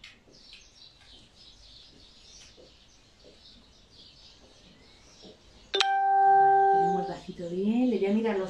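A bell-like chime tone, steady in pitch, sounding suddenly about six seconds in and lasting just over a second, after a quiet stretch of room sound. A woman's voice follows near the end.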